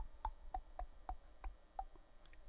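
A faint run of about seven small, sharp clicks from computer controls, three to four a second and slightly uneven, each with a brief knock-like tone.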